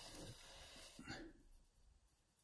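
Near silence: faint handling noise with a small click just after a second in, then dead silence.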